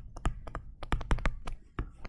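Stylus tapping and clicking on a tablet screen while writing by hand: a quick, irregular run of about a dozen sharp clicks.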